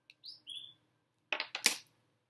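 Two short high chirps, then a cluster of sharp clacks as hand-massage rollers made of stacked wooden discs on metal rods are set down on a ceramic-tiled tabletop.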